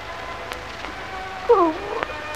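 A short wailing cry about one and a half seconds in, falling and then rising in pitch, over the steady hiss of an old film soundtrack with faint held tones.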